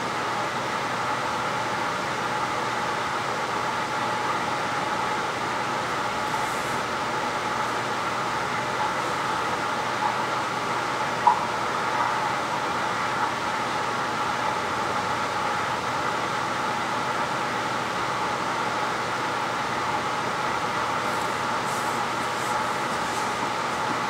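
Steady mechanical noise, as from a fan or ventilation running in a small room, unchanging throughout, with one brief click about eleven seconds in.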